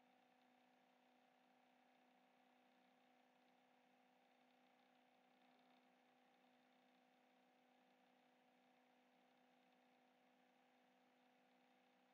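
Near silence: room tone, a faint steady hiss with a low, even hum.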